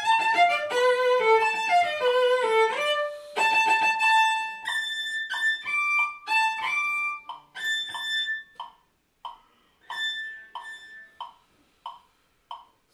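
Cello being bowed in fast running passages, then single notes with gaps between them, growing shorter and sparser in the second half.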